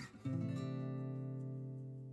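Background acoustic guitar music: a chord struck just after the start rings on and slowly fades.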